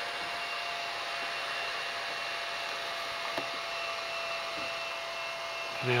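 Steady whirring hiss with a thin, unchanging whine running under it, like a small cooling fan on electrical charging equipment.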